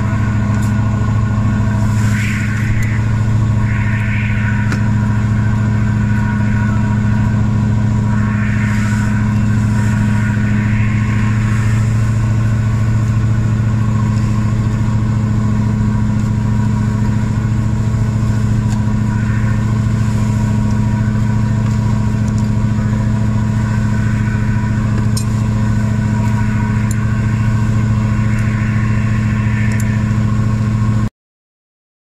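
A lobster boat's engine running with a steady low drone that never changes pitch, with a few short rushes of higher noise in the first dozen seconds.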